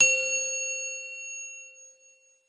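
A single bright, bell-like metallic ding, struck once and ringing with several clear tones that fade away over about two seconds: a logo-reveal sound effect.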